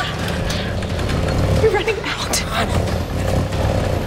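A steady low rumble, with faint hushed voices and a few soft clicks about halfway through.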